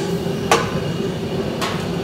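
Steel ladle knocking twice against a steel wok, once about half a second in and again near the end, over the steady rush of a gas wok burner.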